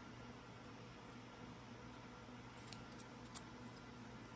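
Near silence: faint steady room hum, with a few light clicks a little past halfway as a thin copper strip is handled.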